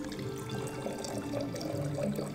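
Wine being poured from a glass bottle into a stemmed wine glass, a soft, steady trickle.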